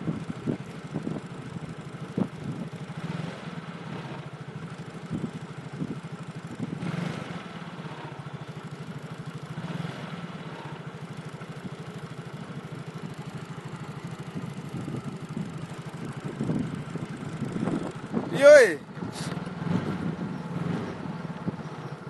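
A small engine running steadily, with a brief voice about eighteen seconds in.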